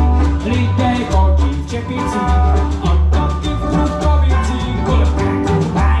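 A live small jazz band plays an upbeat number on double bass, banjo, electric guitar and bongos. Strong bass notes and a steady beat of drum strikes run under the banjo and guitar lines.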